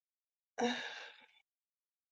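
A woman's breathy, sighing "uh" about half a second in, fading out within a second; the rest is silence.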